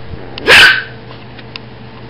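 A single short, sharp bark from a small dog, about half a second in.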